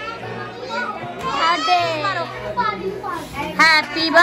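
A group of young children talking and calling out over one another, with a loud high-pitched cry near the end.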